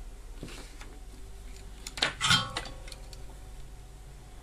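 Small metal tools handled on a workbench: a brief clinking clatter about two seconds in, with a faint click shortly after the start, as one tool is put down and the soldering iron taken up.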